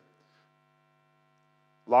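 Faint, steady electrical hum made of several even, unchanging tones in the sound system, heard in a pause in a man's talk. His speech resumes near the end.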